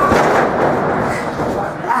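A wrestler's body hits the wrestling ring mat with a thud right at the start, followed by voices.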